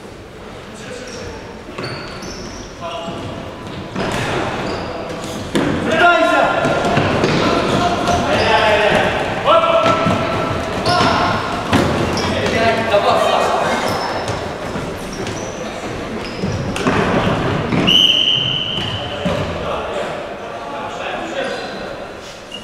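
Futsal game in a large echoing hall: players shouting to each other and the ball being kicked and bouncing on the hard wooden court. One short, high whistle blast sounds late on.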